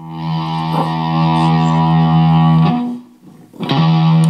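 Electric guitar, a Kiesel HH2 headless played through a small Fender Mustang Mini amp, strummed with an overdriven tone. One chord swells in over the first second and rings on until it is cut off near three seconds. A second chord is struck shortly before the end.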